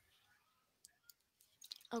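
A few faint, scattered clicks over near silence, coming closer together just before the end.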